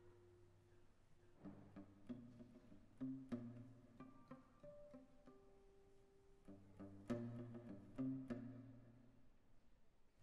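Zhongruan, a round-bodied Chinese plucked lute, played solo and quietly: sparse plucked notes and short chords, each ringing and fading, with pauses between phrases. The notes start a little over a second in.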